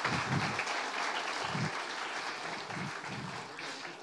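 Audience applauding, the clapping slowly dying away toward the end.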